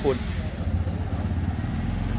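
Motorcycle engine idling with a low, steady rumble.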